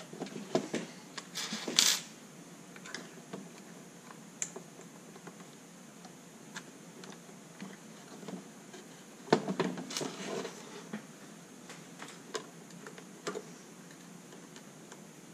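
Plastic clicks and scraping from the aged 1994 plastic housing of a Mercedes SL500 instrument cluster being pried apart by hand, with thin metal pry tools under its locking tabs. Sharp clicks come in two clattery bursts, one in the first two seconds and another about nine seconds in, with single clicks scattered between and after.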